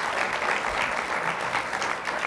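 Studio audience applauding steadily, a dense patter of many hands clapping.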